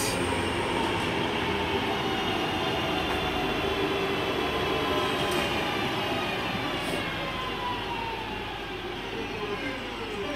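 West Midlands Railway Class 323 electric multiple unit running into the platform and slowing to a stop. A steady rumble of wheels on rail, with a whine of several tones that slowly falls in pitch as the train slows, getting quieter over the last few seconds.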